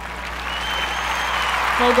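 Crowd applause swelling steadily louder, with a faint thin high tone over it in the first half.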